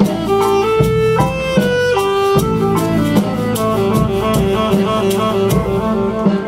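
High school marching band playing its field show: sustained wind melody in moving notes over a steady pulse of drum and percussion strikes.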